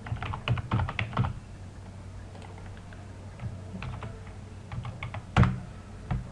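Typing on a computer keyboard: a quick run of keystrokes in the first second or so, then scattered single keys, with one louder click near the end.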